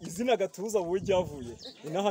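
A woman's voice chanting in short sing-song phrases with a wavering pitch.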